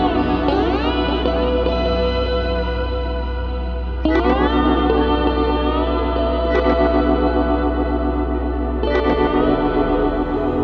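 Instrumental ambient music: a slide guitar drenched in echo and chorus, its notes gliding up into pitch, with fresh notes struck about four, six and a half and nine seconds in, over a steady low drone.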